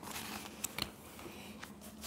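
Paper textbook pages being turned and handled: soft rustling with a few light ticks.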